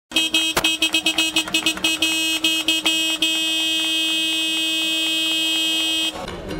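Horn of a Wirtgen cold milling machine, sounded in a rapid string of short toots, about five a second, for about three seconds, then held as one long steady blast until it stops.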